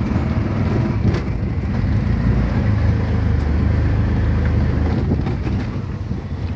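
CNG auto-rickshaw engine running steadily, heard from inside the passenger cabin, with road noise and a couple of brief knocks from the bumpy road.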